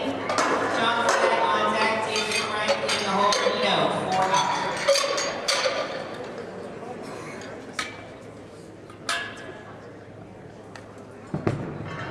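Steel barbell collars and iron weight plates clinking and clanking as loaders change the weight on a deadlift bar. There are a few sharp separate clanks in the second half, and voices chatter through the first half.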